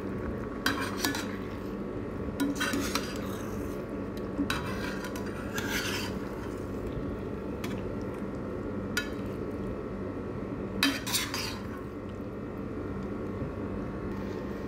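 Metal utensil scraping and clinking against a stainless steel pan as chicken and vegetables in thick sauce are stirred, in short irregular strokes over a steady low hum.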